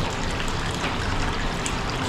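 Hot spring water pouring steadily from the spout into an open-air bath.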